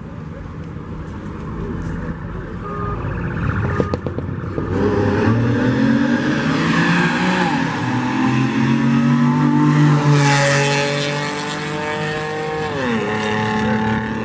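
Camaro and Challenger engines accelerating hard. The engine note climbs and grows louder from about five seconds in, is loudest near ten seconds, then drops sharply in pitch near the end as the cars pass.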